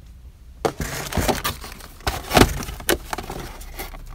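Carded action-figure packages being handled and pulled from a box: a series of short plastic-blister and cardboard clacks and rustles, the loudest about two and a half seconds in.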